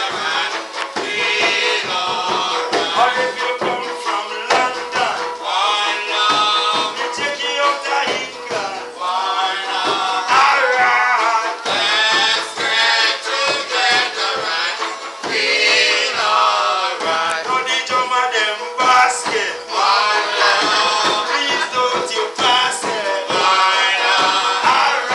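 Live acoustic reggae band: a man sings lead into a microphone over strummed banjo, acoustic guitar and hand drums.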